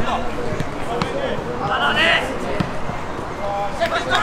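Footballers' distant calls and shouts across the pitch, with a few sharp thuds of the ball being kicked.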